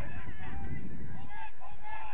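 Several people shouting and calling out at once, their voices overlapping over a low rumble.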